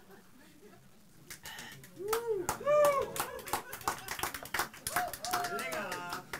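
Audience clapping, starting about a second in, with voices calling out in drawn-out rising-and-falling cries over it.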